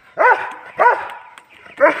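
A dog barking three times in short, loud barks, each rising and falling in pitch, spaced roughly half a second to a second apart.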